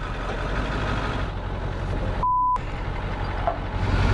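Tow truck engine idling with a steady low hum. About two and a quarter seconds in, a single short one-pitch bleep sounds while everything else drops out: a broadcast censor bleep.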